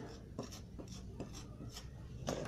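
A few faint, short scraping strokes of a cake scraper spreading royal icing across a stencil on a cake.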